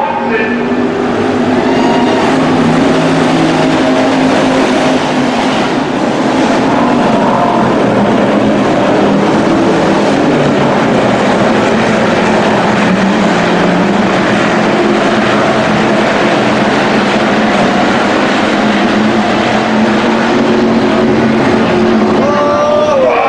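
Several hobby stock race cars' V8 engines running hard on a dirt oval, a continuous loud engine note whose pitch drifts up and down as the cars lift and accelerate around the track.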